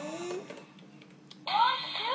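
Hand-activated electronic music toy playing a tune through its small speaker. The sound fades out about half a second in and starts again about a second and a half in, when the toy is set off once more.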